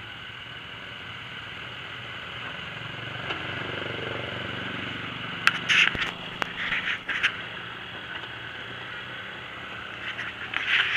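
Can-Am Commander 800 side-by-side's V-twin engine running steadily at low speed, swelling a little about three to five seconds in. Several short scraping rattles come about six to seven seconds in.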